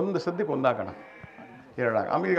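A man speaking into a handheld microphone, a short phrase, then a pause of under a second before his speech picks up again near the end.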